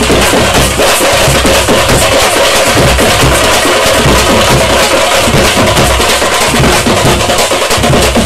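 Tamate frame drums played with sticks by a group of drummers: a loud, fast, dense beat of strikes that never pauses.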